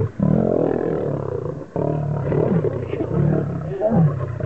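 Lions growling and snarling at close range, in two long, loud, rough bouts split by a brief break just under halfway through.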